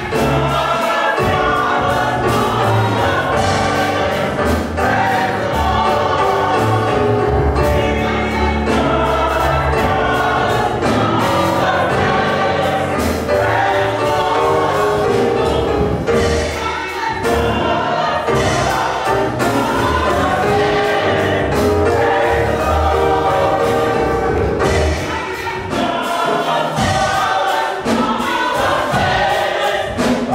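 Church choir singing a gospel song with instrumental accompaniment and a steady bass line underneath.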